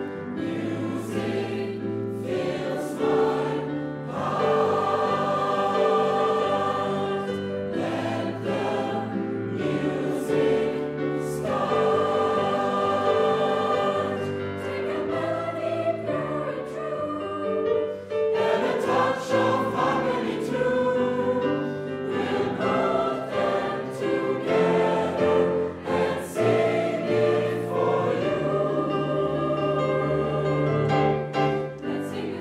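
A mixed school choir of teenage girls and boys singing in parts, accompanied on grand piano, with many long held chords.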